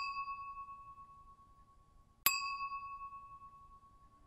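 Two bright bell-like dings, about two seconds apart, each struck sharply and ringing out as it fades: a chime sound effect marking the map pins.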